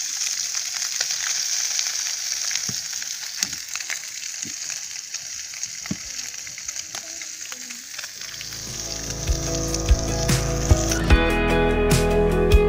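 Meat frying in a pan over an open wood fire: a steady high sizzle with scattered small crackles. Music comes in about two-thirds of the way through, and plucked guitar-like notes take over as the sizzle stops near the end.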